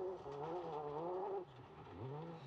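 Distant rally car engine, its note rising and falling in pitch as the revs change, fading away about one and a half seconds in and coming back briefly near the end.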